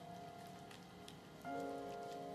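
Soft background music, with a new chord coming in about one and a half seconds in, over a faint crackling patter of gloved hands kneading a grated potato and tapioca flour mixture in a bowl.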